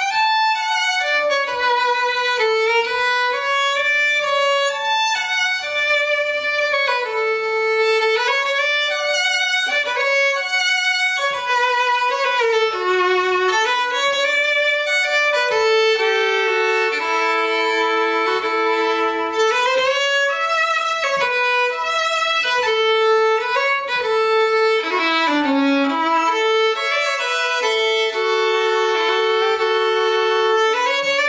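Solo fiddle, unaccompanied, playing a New England waltz melody in D major, with a stretch of held two-note chords near the middle.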